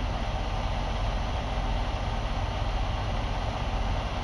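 Steady low engine rumble under an even fan hiss inside a truck's sleeper cab: an idling engine with the cab's climate fan running.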